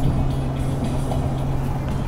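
Steady engine and road noise inside a moving car's cabin: an even low hum with a rumble beneath it.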